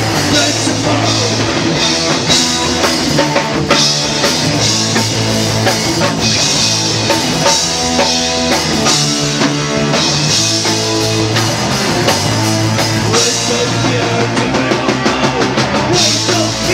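Punk rock band playing live: electric guitars and a drum kit, loud and continuous.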